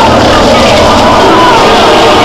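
Loud film soundtrack: voices shouting over a dense, steady noise.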